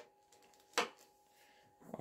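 A brief click about 0.8 s in, with faint ticks just before and after it, as the carbon arms of a Prologic Avenger landing net are pushed into the net's spreader block during assembly.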